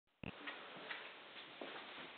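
Faint room hiss with a sharp knock just after the start, then a few soft, irregular taps and shuffles as someone moves about close by before the piano is played.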